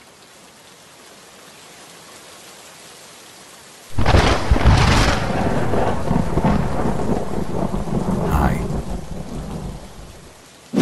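Steady rain falling, then about four seconds in a sudden loud thunderclap that rumbles on and slowly fades over the rain.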